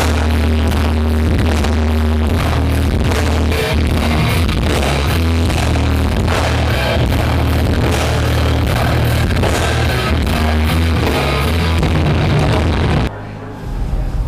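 Loud rock band playing live, with a heavy, steady bass and guitar sound. It cuts off abruptly about a second before the end.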